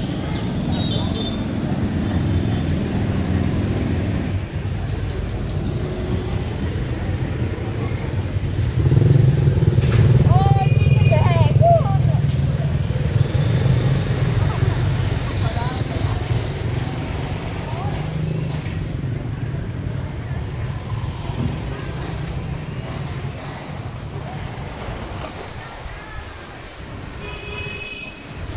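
Motorbike engines running through a busy market street, with voices of people talking. The engines are loudest from about nine to twelve seconds in, as if one passes close by.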